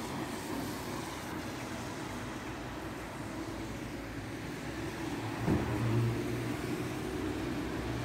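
Street traffic on a wet road: a steady hiss of tyres and engines, with a car passing close and louder from about five and a half seconds in.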